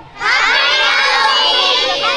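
A crowd of children shouting together, many voices at once, starting a moment in: a group shout of "Happy Halloween" called for by their leader.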